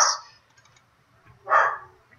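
A dog barks once, a single short bark about one and a half seconds in.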